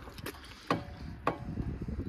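Handling noise from a painted panel being held up against a car: two light knocks about half a second apart, over a low steady rumble.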